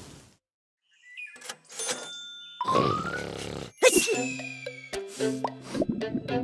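Rain hiss fading out at the start, then about a second of silence. Playful children's cartoon music follows, with comic sound effects that include a rising glide and a falling glide.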